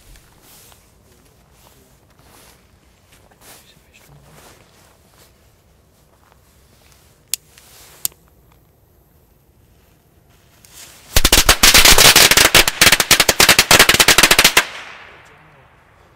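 A WECO Lady Cracker string of 200 small firecrackers going off in a very loud, rapid, dense chain of bangs lasting about three and a half seconds. Two lighter clicks come a few seconds before it.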